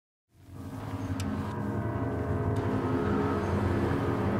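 A steady low drone made of several held pitches, fading in over the first half second, with a faint click about a second in.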